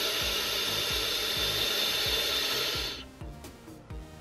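Steady hiss of air drawn through a sub-ohm vape tank's airflow as a long draw is taken on a mini mod firing a ceramic coil at 30 watts, stopping about three seconds in. Faint background music with a steady beat runs underneath.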